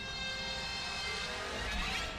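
A steady droning sound from the animated series' soundtrack: many sustained tones over a low rumble, as of a sci-fi machine or engine hum or a held synthesizer chord.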